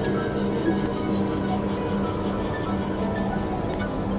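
Experimental electronic noise music: a steady low synthesizer drone with a scratchy noise texture on top that pulses quickly and evenly.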